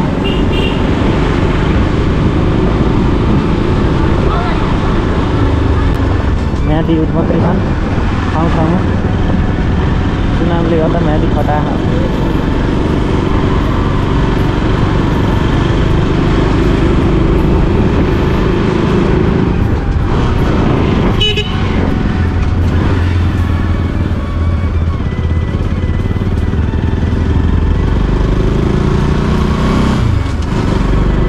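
Motorcycle engine running steadily while riding along a town street, close to the microphone, with road noise.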